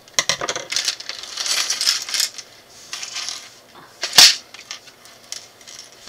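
Small plastic minifigure parts clattering as they are tipped out of a plastic bag onto a wooden table, with the bag crinkling. There are many quick clicks and rustles, then one loud clack about four seconds in.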